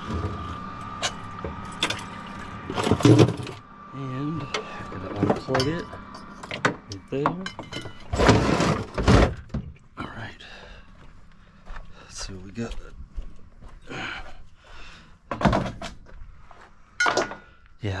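Scattered thunks and knocks as a service compartment door on a pressure-washing trailer is opened and the hose fittings inside are handled, with a louder rush of about a second midway. A faint steady high tone runs under the first few seconds.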